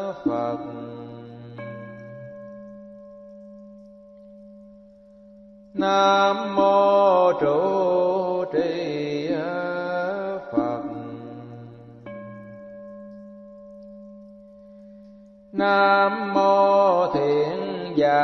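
Vietnamese Buddhist sutra chanting by a single voice in slow phrases, alternating with a struck bowl bell that rings with a clear, slowly fading tone. The bell sounds just after the start and again about ten and a half seconds in; the chanting comes in between the two strikes and again near the end.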